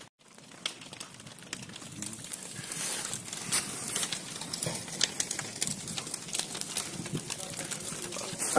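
A burning house crackling, with sharp irregular pops over a steady hiss that swells about three seconds in; voices murmur in the background.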